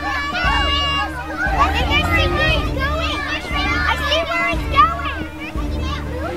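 Several children yelling and shouting together, many high voices overlapping with rising and falling calls and no clear words.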